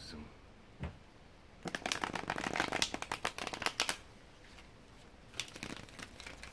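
A deck of tarot cards being riffle-shuffled by hand: a single tap about a second in, then about two seconds of rapid fluttering card clicks, and a shorter burst of clicks near the end.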